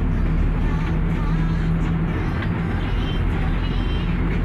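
Steady low engine and road rumble heard from inside a moving vehicle's cabin, with a steady hum through the first couple of seconds.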